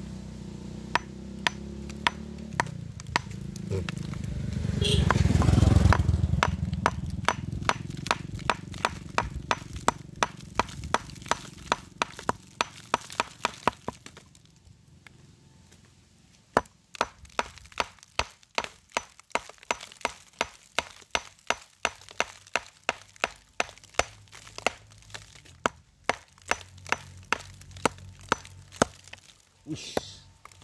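A small hammer tapping and chipping at a block of pale, chalky rock: rapid sharp knocks, about two to three a second, pausing briefly midway. A low rumble swells in the first few seconds, is the loudest thing near six seconds in, and fades away.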